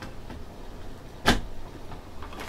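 A single sharp knock about a second in, from an object being handled, over low background noise.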